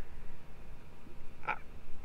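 A pause in a man's talk: a faint low steady hum, and a short intake of breath about one and a half seconds in.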